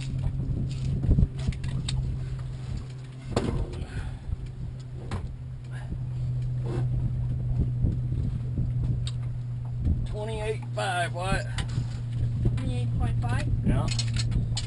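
A steady low motor hum runs throughout, with scattered knocks and clatter as a catfish is handled in a landing net, and a brief voice about ten seconds in.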